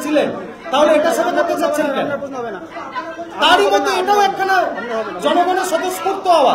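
Speech only: a man talking into microphones.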